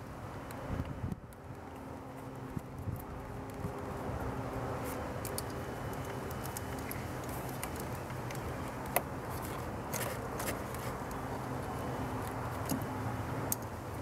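A few scattered light metallic clicks as a wrench works the negative cable clamp onto a car battery terminal, over a steady low hum.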